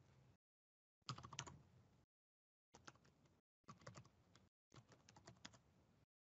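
Faint computer keyboard typing in four short runs of keystrokes, a command being typed at a terminal prompt to run a routine.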